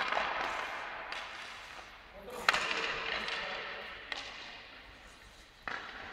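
Ice hockey sticks cracking against pucks in an ice arena, three sharp shots each followed by a long echo that dies away over a couple of seconds.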